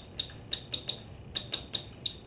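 Stylus clicking and tapping on a pen tablet while handwriting a word: a run of light, irregular clicks, roughly five a second, each with a short high tick.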